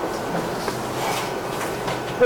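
Steady background noise with a low hum, in a pause between speech.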